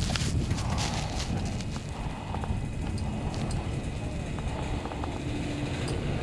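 Chairlift ride: a steady low rumble from the moving lift and its haul rope, with a few faint clicks.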